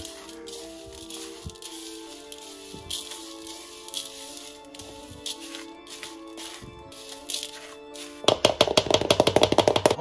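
Background music over the scraping and clicking of a utensil stirring graham cracker crumbs and melted butter in a plastic bowl. A fast, loud rattle takes over for the last couple of seconds.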